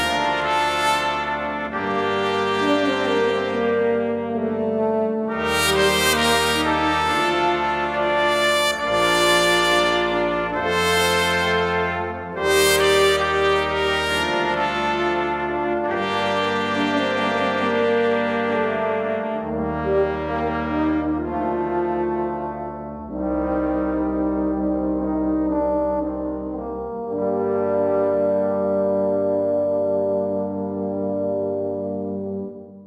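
Sample Modeling virtual brass section (trumpets, French horns, trombones, tuba, and a tuba tuned an octave up for euphonium range), played with a breath controller, sounding sustained chords. The bass note moves every two seconds or so, with short dips in loudness near the middle and around two thirds through.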